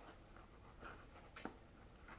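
Near silence with faint scratching and rustling of a cat shifting in a cardboard box, with a couple of light clicks, one about a second in and another a little later.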